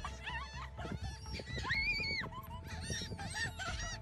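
A flock of gulls calling, many short calls overlapping, with one longer, drawn-out call about two seconds in.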